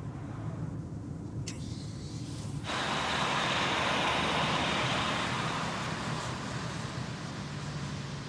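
A car's engine and road rumble heard from inside the cabin, with a single click about a second and a half in. Then, a little over two and a half seconds in, the sound jumps suddenly to louder engine and tyre noise of the car driving past outside, easing off toward the end.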